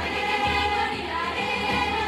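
Large choir singing sustained chords in many voices, with a few low percussion beats underneath.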